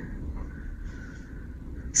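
Background room noise: a steady low hum with no distinct event.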